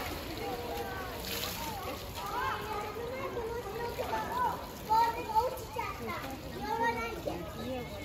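Indistinct chatter of onlookers, children's voices among them, with no words clear.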